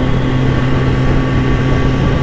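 Kawasaki ZX-10R inline-four engine running steadily at cruising speed, holding an even note. Wind buffets the helmet-mounted microphone underneath.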